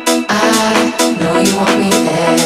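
Electronic dance music from a house DJ mix: a repeating synth chord pattern over steady percussion hits about twice a second.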